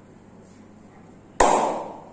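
A single loud, sharp smack of a hand slapping bare skin about one and a half seconds in, fading over about half a second.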